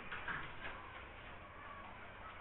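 Quiet room tone with a few faint, brief small sounds in the first half second.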